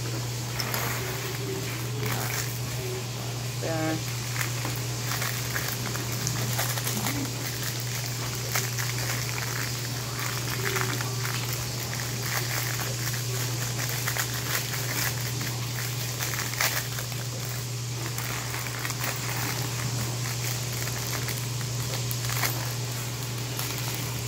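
Clear plastic bag of Lego Technic pieces crinkling as it is handled and opened, with small irregular crackles, over a steady low hum from a running dishwasher.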